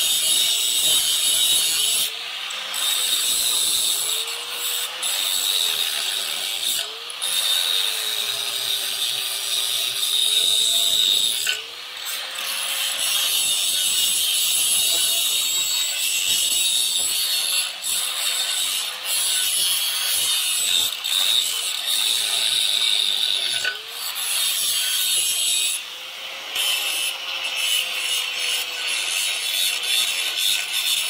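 Handheld angle grinder grinding down fresh weld beads on the steel wedge of a log splitter: a steady, loud grinding with the motor's whine wavering in pitch. There are a few brief lulls where the disc eases off the metal.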